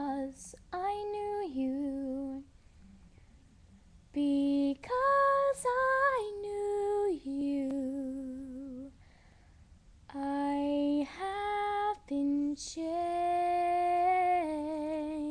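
A girl singing solo a cappella with no accompaniment, in three phrases separated by short pauses. The notes are long and held with vibrato, and the last one is still sounding at the end.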